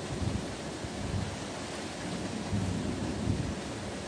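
Thunder rumbling in several rolling swells over a steady background hiss.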